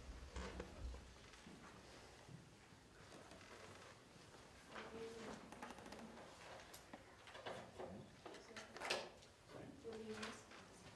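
Quiet hall with faint knocks, clicks and shuffling as stage equipment is handled and set up, a few low thumps in the first second, and brief low murmurs.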